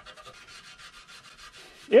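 Pad of 0000 steel wool scrubbing rust off a wet chrome bumper on a 1966 VW Beetle, in quick back-and-forth strokes. It makes a faint, fine scratchy hiss.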